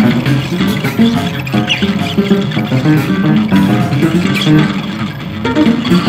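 Free-improvised experimental music led by guitar, a busy, unbroken stream of short low notes.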